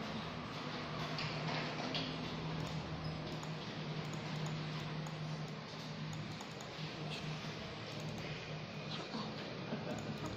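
Faint, light clicks of knitting needles as stitches are worked, over a steady low hum and background noise.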